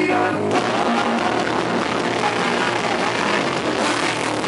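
Live rock band: a female lead vocal over electric guitars and bass. About half a second in the sung line ends and the playing turns dense and heavy.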